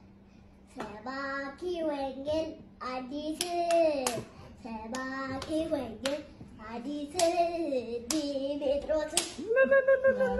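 A young child singing with a pitched, gliding voice, clapping her hands as she sings. The singing starts after a brief pause.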